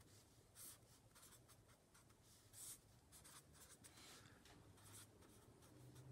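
Faint scratching of a Sharpie marker writing on paper, in short irregular strokes.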